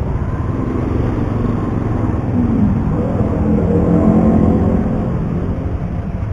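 Yamaha Byson motorcycle engine running at low speed in stop-and-go traffic. About two seconds in its pitch rises and falls as it pulls forward, and it is loudest around four seconds in.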